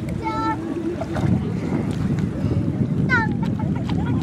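Steady wind noise buffeting the microphone over lapping water, with two short high-pitched voice calls, one just after the start and one about three seconds in.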